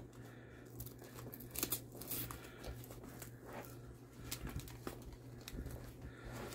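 Faint rustling and scattered small clicks of nylon webbing and a plastic headlamp clip being worked by hand as the lamp is fastened to a plate carrier's shoulder pad. A steady low hum runs underneath.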